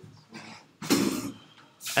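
A single short cough about a second in.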